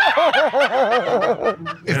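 One person laughing in a quick run of short 'ha' pulses, about five a second, that tails off after about a second and a half. Speech starts at the very end.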